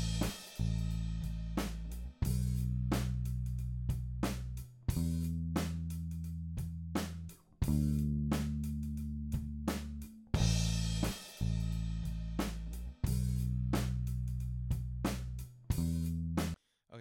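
Playback of a live four-mic drum kit recording with a bass track, unprocessed and not yet corrected for timing: regular kick and snare hits with cymbals over long held bass notes. The four-bar passage starts over about ten seconds in.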